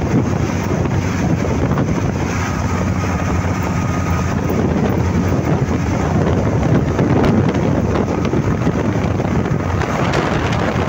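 Steady wind rush over the microphone of a motorcycle at road speed, with a low engine and road rumble underneath.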